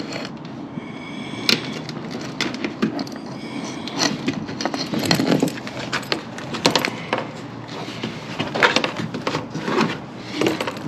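Irregular clicks, knocks and light metallic rattles of hand tools and small hardware being handled while fitting parts, with a few sharper knocks.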